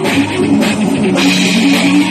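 Live heavy metal band playing loud: a Jackson bass guitar, electric guitar and drum kit with cymbals, in a loud jam.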